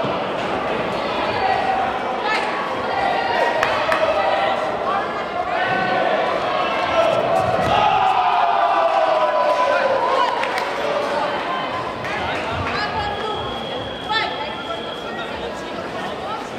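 Coaches and spectators shouting and calling out in a large sports hall during a kickboxing bout, with one long call falling in pitch around the middle. Scattered sharp thuds of strikes or feet on the mat come through.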